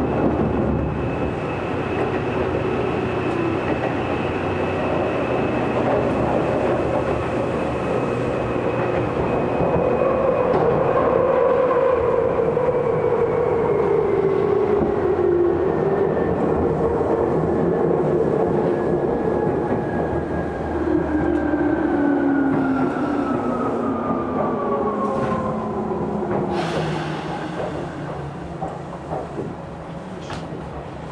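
Tokyu 8500 series electric train's motors and gears whining steadily down in pitch as it slows for a station, over rumble and rail clatter. A short hiss of air comes near the end as it draws to a stop.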